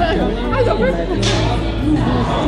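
Several people chatting over one another, with music playing underneath.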